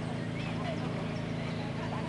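Steady low hum over outdoor ambience, with a few short chirping bird calls and the muffled hoofbeats of a horse cantering on sand arena footing.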